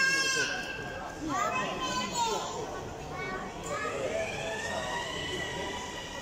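Children's high-pitched voices calling and squealing in a large hall, ending in one long drawn-out call that rises and falls.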